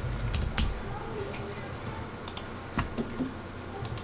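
Computer keyboard keystrokes: a quick run of taps in the first half second, then a few scattered single clicks.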